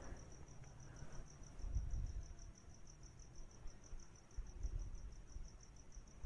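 Faint background noise with a steady high-pitched chirp pulsing several times a second, and a couple of brief low rumbles.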